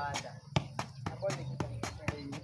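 A football being kept up with the feet: a steady run of dull taps, about three a second, each one a touch of shoe on ball. A voice chants or calls along over the taps.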